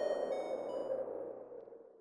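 The closing held note of an electro track fading out. It is a sustained tone whose bright upper notes drop away about a second in, dying to near silence by the end.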